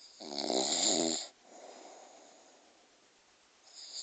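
A sleeping man snoring loudly: one rattling snore on the in-breath lasting about a second, a softer breath out after it, and the next snore starting near the end.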